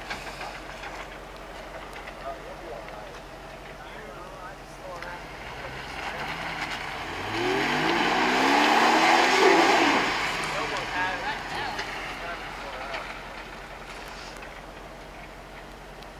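Jeep Wrangler engine running at low revs, then revved up about seven seconds in, its pitch climbing under a loud rush of noise that peaks a couple of seconds later and then eases back to a low run as the Jeep works in the mud.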